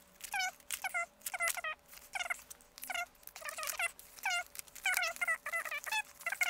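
A woman's voice sped up to a high, squeaky chipmunk pitch, counting aloud in quick short syllables as the count of tokens is fast-forwarded.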